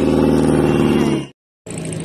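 A car engine running steadily, loud, for about a second and a half before cutting off abruptly; after a brief gap a shorter, quieter stretch of engine sound follows near the end.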